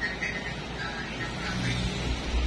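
Low engine rumble, like a motor vehicle going by, growing louder near the end.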